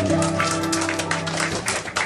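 A piano's closing chord, held and then cut off about a second and a half in, over an audience clapping.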